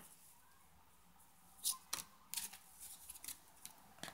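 Tarot cards being handled on a tabletop: after a quiet first second and a half, a string of faint flicks and taps as cards are drawn from the deck and laid down.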